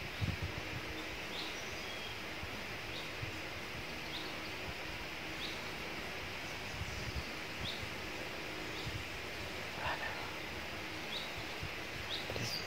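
Steady forest ambience hiss with a small bird repeating a short, high, upward-flicking call every second or two.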